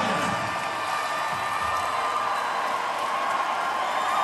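Large concert crowd cheering, whooping and applauding, a steady wash of voices with no break.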